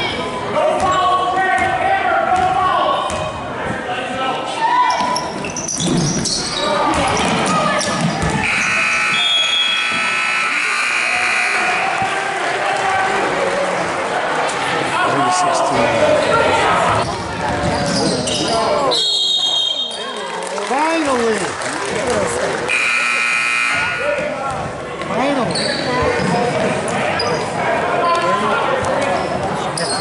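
Basketball dribbling and bouncing on a hardwood gym floor amid crowd voices, with a scoreboard buzzer sounding for a few seconds about a third of the way in.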